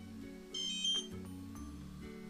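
Background music, with a short high-pitched electronic beep about half a second in from a DJI Spark remote controller as it powers on.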